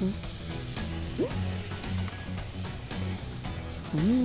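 Palm-heart, onion and garlic filling sizzling in a frying pan as a spatula stirs it, with background music and a steady bass beat underneath.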